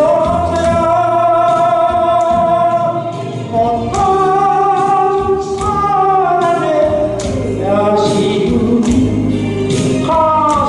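A man singing a slow song into a microphone over backing music, holding long notes that bend and slide between pitches.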